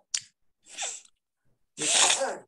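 A man's breath and mouth noises close to the microphone: a brief hissy puff, a soft breath, then a loud, breathy burst near the end.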